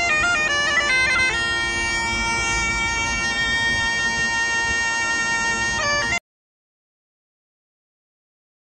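Bagpipes playing: steady drones under a chanter melody that runs through quick ornamented notes in the first second or so, then holds a long note. The sound cuts off suddenly about six seconds in.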